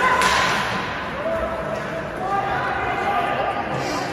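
Indoor ice hockey rink during play: a sharp crack of stick or puck right at the start, echoing in the hall, then voices calling out over the steady noise of the game.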